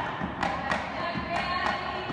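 A Hawaiian chant sung over a gourd drum (ipu) accompanying hula. The drum strikes come in two quick pairs, about a quarter second apart within each pair.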